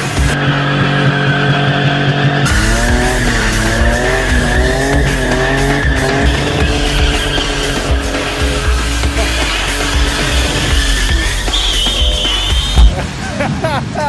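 Ford Sierra estate with a welded rear differential drifting: the engine revving up and down and the rear tyres squealing in long slides, with music over the top. A sharp loud bang near the end.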